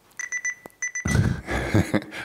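Two quick runs of short, high electronic beeps, about ten a second, followed by about a second of louder rustling noise.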